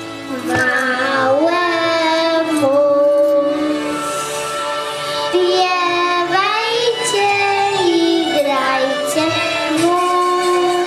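A young girl singing a Polish Christmas carol into a microphone, in phrases of long held notes.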